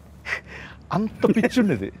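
A man's voice: a sharp breath drawn in, then a short spoken phrase about a second in.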